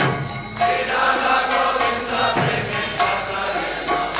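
Devotional kirtan: a lead voice and a group of voices chanting a mantra, accompanied by a mridanga drum and ringing struck metal percussion. The sound thins briefly at the start, then the full singing and percussion come back in about half a second in.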